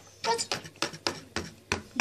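A brief snatch of a child's voice, then a run of sharp clicks, about three or four a second, as a plastic toy horse is walked along a board arena.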